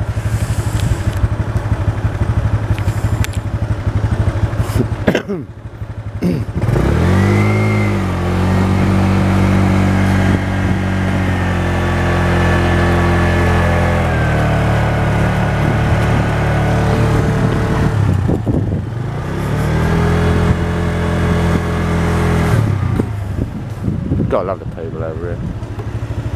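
Motorbike engine pulling away under wind and road noise. About seven seconds in its pitch rises and then holds steady. It drops briefly later on, rises again and falls away near the end.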